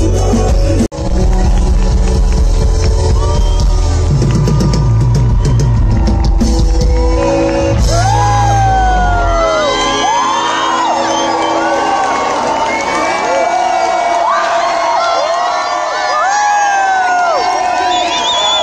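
Live concert sound through the PA: loud music with heavy bass, cut by a brief dropout about a second in. The bass drops away about nine or ten seconds in, leaving the crowd whooping and yelling over a lighter backing.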